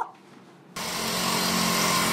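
A brief hush, then steady outdoor background noise cuts in abruptly about three-quarters of a second in. It is an even hiss with a low mechanical hum under it, typical of street and traffic ambience.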